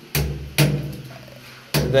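Hammer blows on a steel chisel cutting into a concrete hollow-block wall: three sharp strikes, the third near the end, chipping a groove to lay electrical conduit in.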